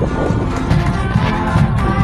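High school marching band playing as it marches past: brass holding chords over steady drum strokes.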